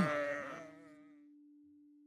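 A faint, wavering sheep bleat fading away within the first second, over a single steady low tone that lasts a little longer before everything fades to near silence.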